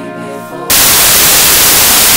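Cinematic background music with held tones, cut off less than a second in by a loud, even burst of static hiss that lasts about a second and a half.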